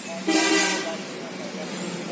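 A vehicle horn toots once, a short steady note about a quarter second in, lasting about half a second, over a low background murmur.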